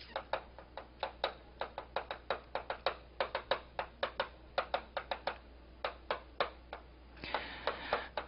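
Chalk writing on a blackboard: quick, irregular taps and clicks of the chalk against the board as each handwritten stroke is made, several a second, with short pauses between words.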